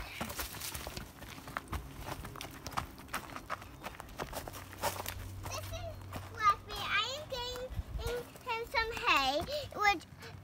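Footsteps on dry leaves and dirt, a run of small irregular clicks, over the first half. In the second half a young child's high voice talks in short bursts.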